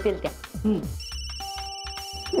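Electronic phone ringtone: a high, steady trilling tone that starts about a second in, with a lower steady tone joining it shortly after.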